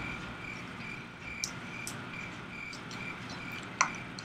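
A faint, high chirp repeating evenly about two or three times a second, with a few light clicks, the sharpest near the end.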